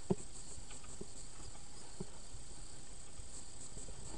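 Faint steady high-pitched hiss, picked up underwater, with soft short knocks about once a second.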